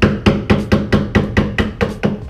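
A rapid, even series of sharp knocks, about four a second, as a hand tool strikes the rusted, Bondo-filled wheel arch of a Honda Civic to knock out the rot and filler, over background music.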